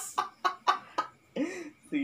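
A man's laughter tailing off in a few short, fading bursts about a quarter second apart, followed by a brief voiced sound near the end.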